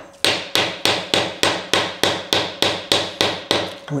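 Light hammer taps driving a steel-backed bush into the bored end boss of a milling vice body: a steady run of about fourteen even taps, three or four a second. The bush is starting to bind in its bore.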